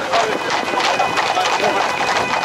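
Hooves of a group of Camargue horses striking a paved road in a quick, overlapping clip-clop, mixed with the voices of a crowd on foot talking and calling around them.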